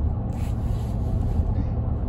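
Steady low rumble of a vehicle driving on the road, heard from inside the moving cabin.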